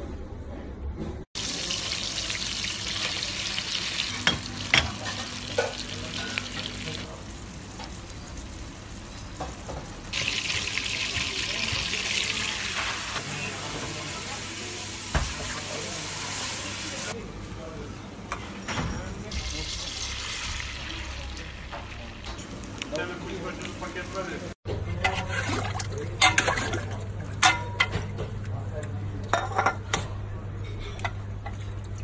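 Butter sizzling and bubbling in a metal pan while a spoon stirs it, a steady hiss that changes in strength from one cut to the next. Near the end it gives way to a few sharp clinks of a metal spoon against a plate and pot.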